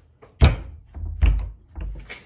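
A door being handled and knocked: a sharp thunk about half a second in, then two duller thuds.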